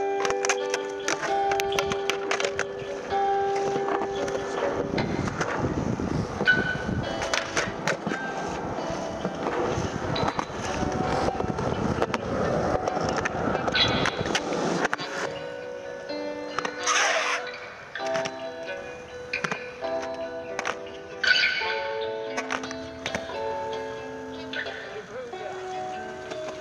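Skateboard wheels rolling on concrete with clacks from the board's tricks, under a music track of held melodic notes. The rolling noise is strongest in the middle stretch.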